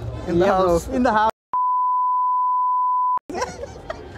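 Men talking and laughing, then the sound cuts out and a steady single-pitch bleep plays for nearly two seconds before the talk resumes: an edited-in censor bleep over a spoken word.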